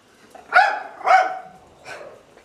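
A dog barks twice in quick succession, about half a second apart, worked up at a cat it has spotted. A short click follows near the end.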